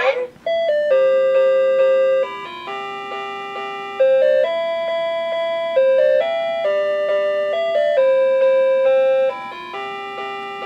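A simple electronic tune from the sound chip of a Gemmy animated Easter bunnies-on-a-swing decoration, played as plain steady notes that change every half second to second or so.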